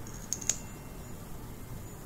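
Two small sharp clicks close together, about a third and a half of a second in, as the applicator wand is drawn out of a plastic lip gloss tube.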